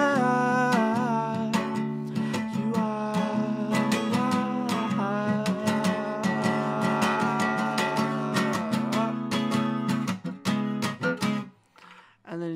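Acoustic guitar strummed in a steady rhythm with a man singing over it. The playing breaks off and stops near the end.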